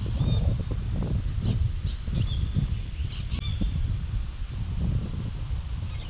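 Wind rumbling on the microphone, with short high bird chirps several times over it.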